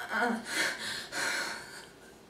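A young woman's ragged, breathy gasps for air, three in a row, acted as if she is in pain.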